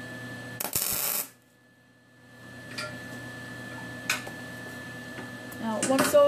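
A single short MIG tack weld, a loud burst of arc noise lasting about half a second, joining two 1/4-20 steel nuts. A steady low hum and a couple of small metallic clicks follow.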